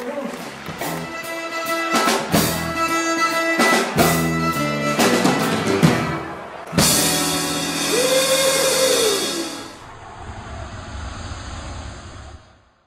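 Live band with drum kit and guitars playing a short passage of drum hits over held chords. About seven seconds in, a sudden loud noisy burst with a tone that rises and falls, fading to a faint hiss near the end: an added outro sound effect.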